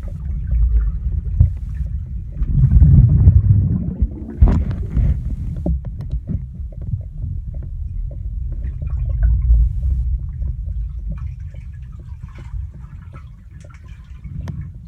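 Water moving around a phone held underwater, heard as a muffled low rumble with scattered clicks and knocks. It is loudest in surges about three and four and a half seconds in and fades toward the end.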